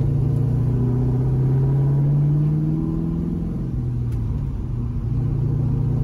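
1973 Camaro restomod's LS V8 engine and exhaust heard from inside the cabin while driving. The engine note climbs a little in pitch over the first two seconds, falls away about halfway through, then settles to a steady note.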